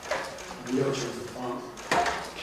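A man speaking in a room, with a sharp click just before the end.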